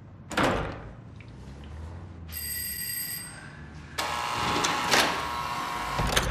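A thump about a third of a second in, then a doorbell rings twice. The first ring is short and clear; the second, about four seconds in, is longer and harsher.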